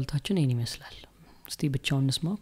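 Speech only: a man talking, with a short break a little after the first second.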